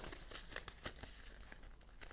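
Faint rustling and crinkling of paper banknotes being flipped through inside a plastic envelope, with a few sharper crinkles in the first second.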